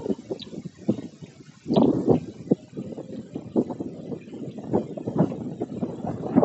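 Wind buffeting the camera microphone: irregular low rumbling and thuds, growing stronger about two seconds in.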